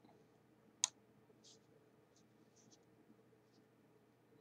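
One sharp computer mouse click about a second in, then a few faint soft clicks over quiet room tone.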